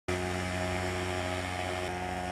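Thermal fogging machine running in the bed of a pickup truck, giving a steady, even-pitched drone as it puts out white insecticide fog against mosquitoes.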